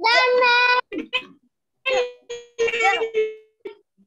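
A young child's high voice answering in a sing-song: one long held note at the start, then several shorter sung syllables, giving the phonic sound of the letter Z.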